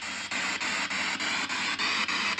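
Handheld P-SB7 spirit box radio sweeping rapidly through FM stations: hiss and static with scraps of broadcast sound, cut into short steps about six or seven times a second.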